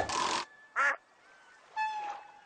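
A brief noisy burst, then about a second in a single short nasal quack-like squawk: a cartoon sound effect.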